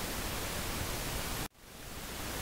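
Steady hiss of the recording's background noise with no speech. It cuts out abruptly about one and a half seconds in, then fades back up.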